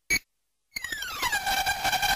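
Glitchy experimental electronic music: a brief clipped blip, a gap of dead silence, then a buzzy electronic tone that glides down in pitch and settles into a steady note.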